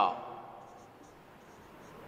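Marker pen writing on a whiteboard: faint, light strokes as a word is written.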